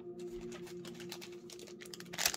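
Faint light clicks and rustling from hands handling a trading card and plastic card sleeves, growing busier near the end, over a faint steady background tone.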